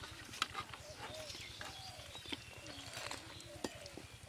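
Potato cakes deep-frying in hot oil in an iron wok, the oil crackling, with a metal slotted spoon clinking and scraping against the wok in several sharp knocks as the cakes are turned. Short calls sound in the background throughout.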